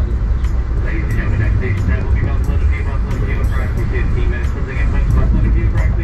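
Steady low rumble of the Amtrak Maple Leaf passenger train rolling along the track, with indistinct voices over it.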